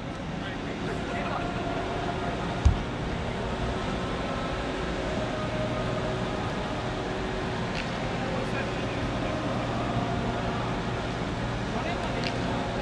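Steady hum of a large roofed ballpark's interior, with faint distant voices of players warming up on the field. One sharp thud about two and a half seconds in.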